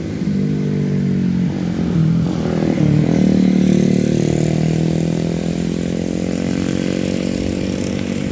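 Motorcycle engines running as several motorbikes ride past on a road. One passes close about three seconds in, the loudest point, and its engine note shifts as it goes by. The others carry on behind it.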